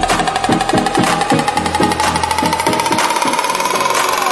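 Background electronic music: a steady beat of about four strokes a second under a single tone that rises slowly, building up, with the bass dropping away near the end.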